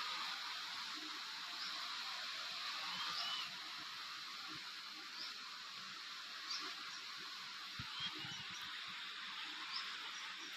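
A steady high hiss of outdoor background with small birds giving short, thin chirps now and then, about eight in all, and a few faint, soft low knocks.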